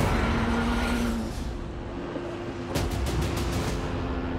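Race-modified Ford Transit van running hard on the track. There is a short burst of sharp crackles about three seconds in.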